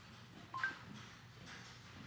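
A short two-note rising electronic chime from a DigiLand 10-inch tablet's speaker, the voice-search tone marking that the spoken command has been taken in, followed by faint room tone.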